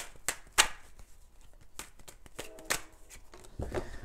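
Tarot deck being shuffled by hand: a run of irregular, sharp card snaps and slaps, a few each second.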